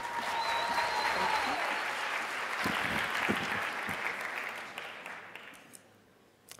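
Audience applauding, dying away over the last second or so.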